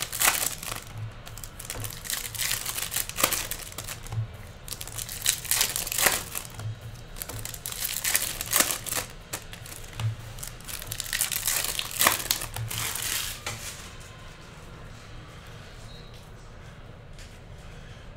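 Foil trading-card pack wrapper crinkling and tearing as it is opened, with cards handled and shuffled, in irregular bursts of rustling that die down about fourteen seconds in.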